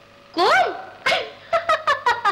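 A woman's voice gives a short high call that rises and falls, then breaks into laughter in quick, repeated syllables near the end.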